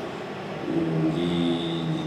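A man's voice holding one long hesitation sound at a steady pitch, starting about half a second in and lasting over a second, mid-sentence while he searches for the next word.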